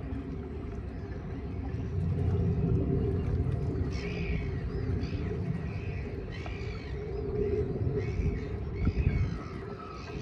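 Wind buffeting the microphone with an uneven low rumble, and from about four seconds in, birds calling with short, repeated chirps.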